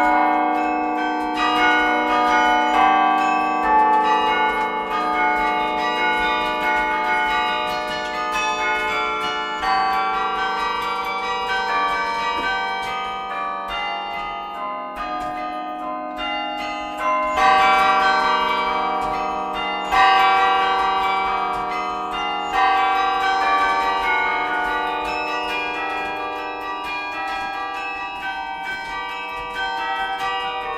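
A carillon's bronze bells are played from the baton keyboard in a flowing piece of music. Many struck notes overlap and ring on. Heavier strikes stand out about 17 and 20 seconds in.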